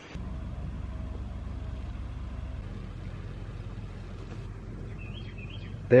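Flatbed tow truck's engine running, a steady low rumble whose deeper note drops away about two and a half seconds in. A few bird chirps come near the end.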